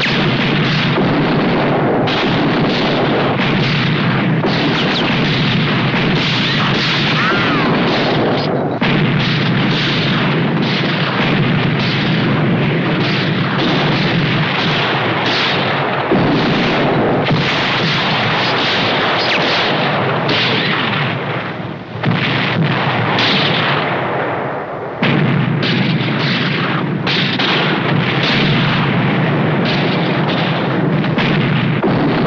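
Battle sound of cannon fire and gunfire in a continuous barrage, with shells bursting. The firing dies down twice in the last third and breaks out again each time with a sudden loud blast.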